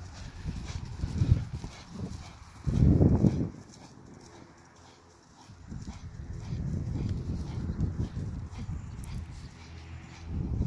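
Hoofbeats of a pony cantering on grass, coming and going in loudness, with a loud low burst about three seconds in.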